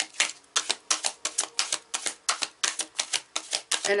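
A deck of cards being shuffled by hand: a fast, even run of crisp card slaps, about six or seven a second.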